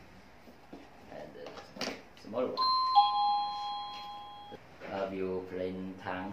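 Plug-in wireless doorbell chime receiver sounding a two-note ding-dong about two and a half seconds in: a higher note, then a lower one half a second later, both cutting off together after about two seconds. The chime plays when the receiver is powered up, without the doorbell button being pressed.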